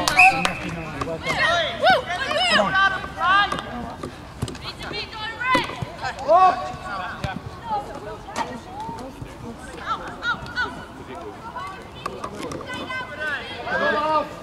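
Shouts and calls of young footballers across a pitch, several voices overlapping, with occasional sharp knocks.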